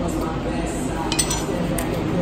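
Metal palette knife clinking against a hard countertop as it is put down: two short, light clinks a little over a second in, about half a second apart.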